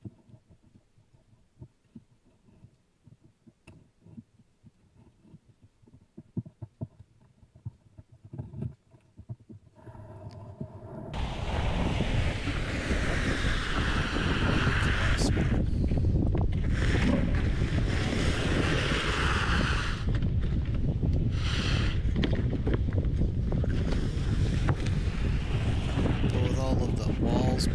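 Light scrapes and taps of a snow shovel loading snow into a plastic jet sled. About ten seconds in, a loud, steady rushing scrape starts as the loaded plastic jet sled is dragged over icy plywood, with wind rumbling on the microphone.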